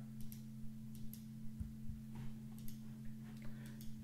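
A few faint, scattered clicks over a steady low hum.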